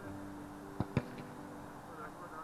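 A football being struck twice in quick succession: two sharp thuds about a fifth of a second apart, over a faint bed of steady tones.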